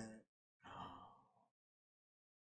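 A man's short, breathy sigh of frustration about half a second in, after the last word before it fades out; otherwise near silence.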